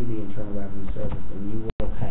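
A man speaking, with a momentary dropout in the audio near the end.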